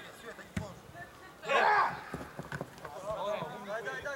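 Football players shouting across an open pitch, with a sharp thud of the ball being kicked about half a second in. Around a second and a half in comes one loud, drawn-out yell, the loudest sound here, followed by a few lighter thuds.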